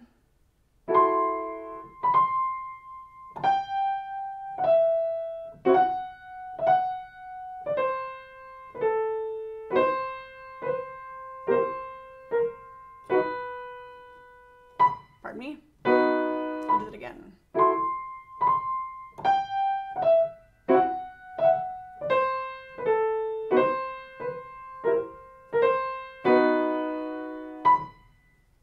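Piano played slowly, one hand's notes and chords at a time, in an uneven dotted rhythm of alternating long and short notes. This is a practice drill on an etude, with the usual dotted rhythm reversed.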